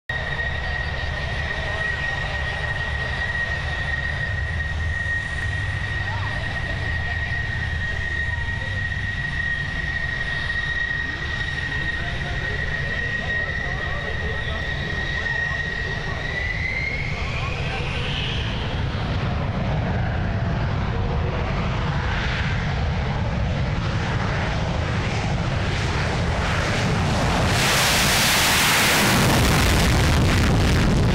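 F-16 fighter's jet engine holding a steady high whine on the runway. About halfway through the whine climbs in pitch as the engine spools up, and the sound grows into a loud, full-power afterburner takeoff near the end.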